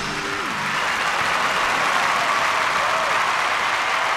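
Audience applauding steadily at the end of a live band song, the last notes dying away in the first half second.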